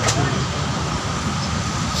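Steady road traffic noise from passing vehicles, with a brief click just after the start.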